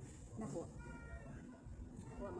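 A woman's voice saying a short word, followed about a second in by a brief high-pitched sound made of a few steady tones, over low restaurant table noise.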